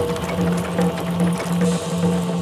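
Background score music: a low tone pulsing in an even rhythm, a little more than twice a second, with a fainter higher tone pulsing alongside it.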